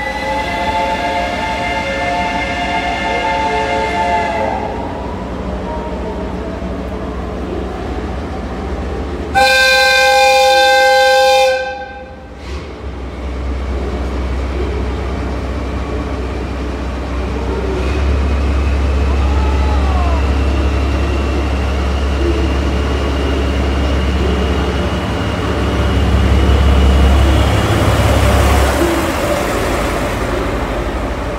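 A train whistle sounds a blast of about four seconds, then a second, louder blast of about two seconds that cuts off sharply. After it the train pulls out, a DE10 diesel locomotive's engine working up to a heavy low rumble.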